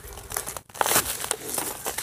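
Rustling and scraping of a padded nylon jacket rubbing against the phone's microphone, irregular crinkling handling noise as the phone is moved.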